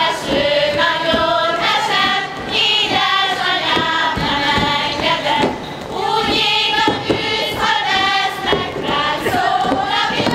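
A group of women singing a Hungarian folk song together, unaccompanied or nearly so, with a few thuds of steps on the stage.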